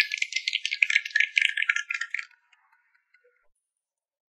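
Hands clapping quickly, a rapid patter of claps that stops a little over two seconds in.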